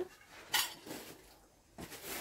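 Quiet handling sounds of hands working dough on a floured wooden board: a few brief, soft taps and rustles.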